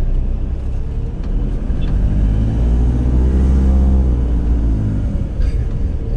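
Vehicle engine and road rumble heard from inside the cab while driving slowly; the engine note rises and then falls back again around the middle.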